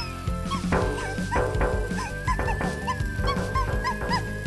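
Cartoon background music: a quick, even beat of short notes that bend up and down in pitch, under one long held high note.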